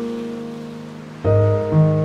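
Background piano music. A held chord fades away, then about a second in a new chord starts, its notes coming in one after another.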